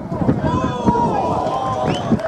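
Several voices shouting over one another on an outdoor football pitch: players calling out as a free kick is played into the penalty area, with irregular low thuds underneath.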